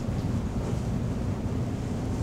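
A steady low rumble of background noise with no speech, even in level throughout.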